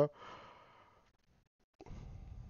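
A man's faint, breathy sigh into a close headset microphone as he finishes talking, then quiet, and a low, muffled puff on the microphone near the end.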